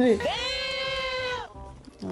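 One high-pitched, bleat-like cry that swoops up at the start, is held steady for about a second and then cuts off.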